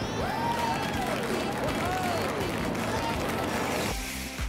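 Steady rushing noise of an airplane take-off sound effect, with a few faint voices whooping in rising and falling glides over it. It cuts off at the end.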